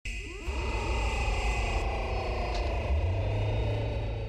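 Electronic sci-fi sound effect of a spinning machine: a whirring cluster of tones that slides slowly downward in pitch over a heavy low rumble, with a steady high whine above.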